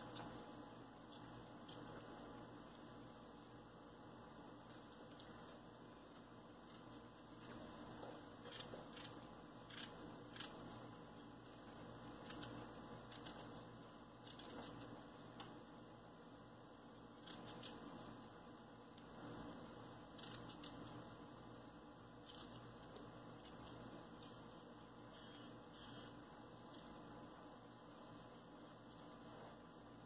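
Near silence, broken by faint scattered soft clicks and squishes as fresh strawberries are cut into small pieces with a small knife, held in the hand, and dropped onto a layer of cream.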